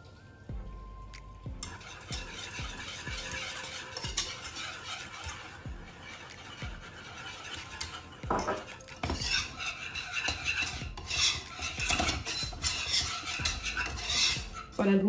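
Wire whisk stirring and scraping in a small nonstick saucepan, working flour into melted butter for a béchamel roux, over a soft sizzle. The whisk strokes turn louder and quicker from about eight seconds in.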